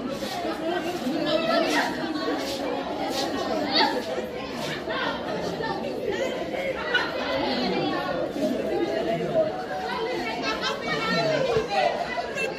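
Indistinct chatter of many students' voices at once, steady throughout, with no single voice standing out.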